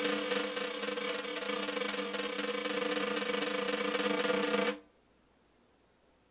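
Black Swamp 5x14 snare drum with its stock Evans Black Swamp head, untuned straight out of the box, played with sticks in a rapid roll that swells slightly and stops about five seconds in. A bandana is draped over part of the head.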